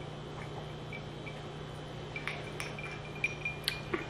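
Faint sipping and swallowing from a drinking glass, with a few light clicks in the second half, over a steady low hum.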